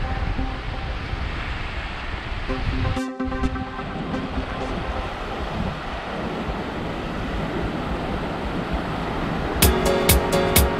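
Surf washing onto a sandy beach as a steady rushing noise. The tail of electronic background music fades out in the first few seconds, and a new music track with sharp plucked notes starts just before the end.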